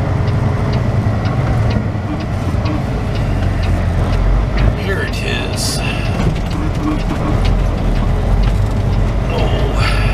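Semi truck's diesel engine running at low speed, heard from inside the cab as a steady low rumble, with a light regular ticking over it.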